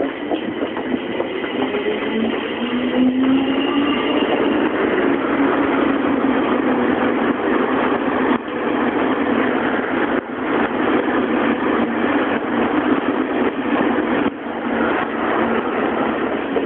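JR East E653 series electric limited express running past close by, a dense, steady rail noise. In the first few seconds a rising whine from an electric train's traction motors as it accelerates.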